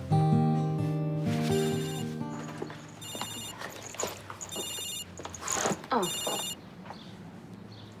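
A mobile phone ringtone sounding in four short, high electronic bursts about a second and a half apart, then stopping as the call is answered. Soft background music fades out under the first few seconds.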